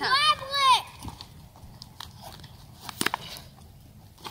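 A child says a few words at the start, then scattered small clicks and crinkles as a tape-wrapped cup and its packaging are handled.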